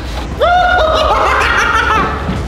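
A person laughing in a high-pitched voice: it starts about half a second in with a sharp upward swoop, then runs on in a string of short repeated laugh notes.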